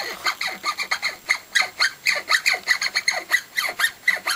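A fast, even run of short, loud squeaks, about five or six a second.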